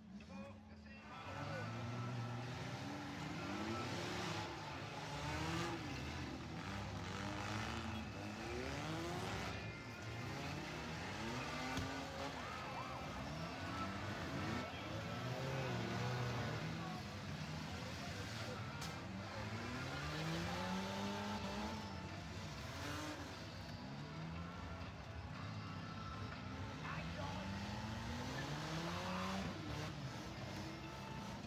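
Several demolition-derby cars' engines revving up and down over one another as the cars ram each other, louder from about a second in, with a few sharp knocks of impacts.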